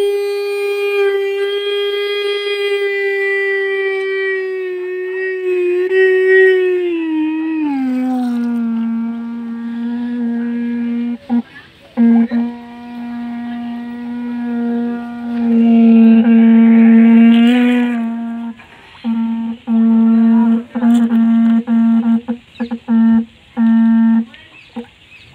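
Battery-powered electric disc horn sounding a loud, steady note while held in water. About seven seconds in, its note slides down to a lower pitch as it is pushed under, and in the last few seconds it cuts in and out repeatedly.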